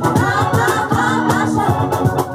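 Live soul-reggae song: two women singing together into microphones over a band accompaniment with a steady beat.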